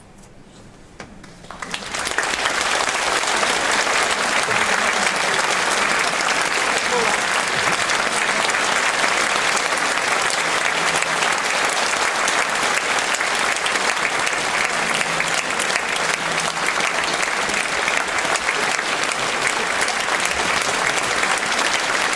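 Concert audience applauding. A moment of quiet, then applause breaks out about a second and a half in and holds steady and loud.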